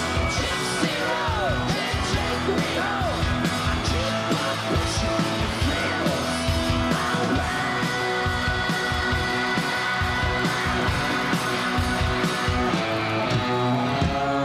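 Live hard rock band playing loud: electric guitar with bending notes and a long held note about eight seconds in, over drums and cymbals.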